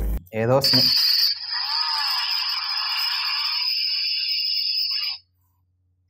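Power-on sound of a car-shaped flip feature phone played through its small speaker: a thin start-up sound with no bass that lasts about four seconds and cuts off suddenly.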